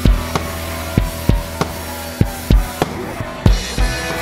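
Acoustic rock drum kit played along with the recorded heavy-metal song: kick drum and snare strikes every few tenths of a second, in an uneven pattern, over sustained guitar and bass chords that change near the end.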